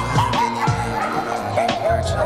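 A pug barking in several short yaps in quick succession, over steady background music.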